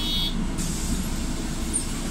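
City bus heard from inside the passenger cabin: a steady low rumble of engine and road. A brief high whine sounds at the very start, and a soft hiss joins about half a second in.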